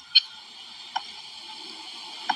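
Steady faint hiss with two brief sharp clicks, a louder one just after the start and a softer one about a second in.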